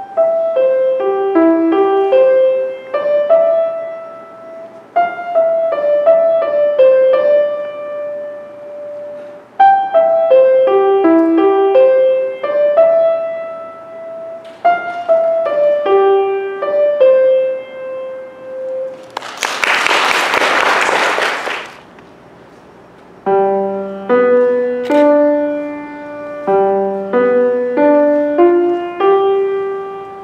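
Grand piano played solo: a short, simple piece in the middle and upper register, then after a loud rush of noise lasting about two seconds and a brief pause, a second piece starts about three-quarters of the way through with a lower bass line under the tune.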